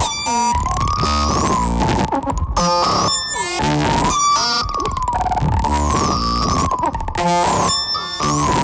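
Experimental modular synthesizer music: a tone that slowly wavers up and down, with a higher whistling tone swinging in pitch in the same cycle of about two seconds, over sweeping buzzy tones, noise and a low rumble.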